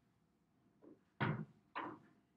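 A man hoisting himself up onto a classroom table: a faint knock, then two loud thumps half a second apart as his weight lands on the tabletop and his legs swing up.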